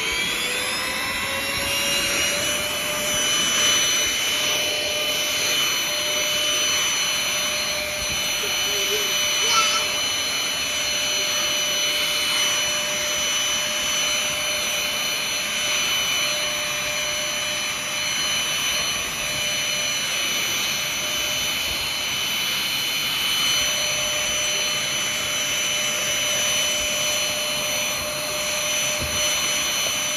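Pink cordless handheld vacuum switched on, its motor whine rising in pitch over the first two seconds, then running steadily at a high pitch as it sucks up crumbs from the couch base.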